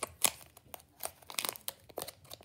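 Foil wrapper of a Pokémon trading card booster pack crinkling in the fingers as it is worked at to open it, in a few short, scattered crackles.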